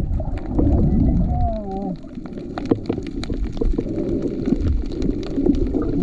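Underwater sound picked up by a submerged camera over a coral reef: a steady low rumble of moving water with many scattered sharp clicks, and a short wavering tone about a second and a half in.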